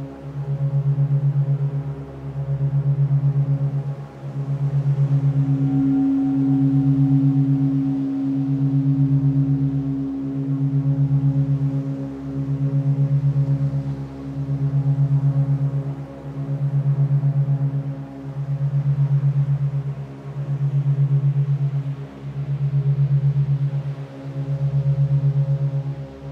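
Meditation drone built on a 136.1 Hz base tone with 8 Hz monaural beats: a fast flutter inside slow swells that rise and fall about every two seconds, over held higher tones. A brighter tone an octave up swells in about six seconds in and fades out near eighteen seconds.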